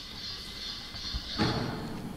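Red vending machine being worked by hand: a steady high hiss, then a single dull thump about one and a half seconds in.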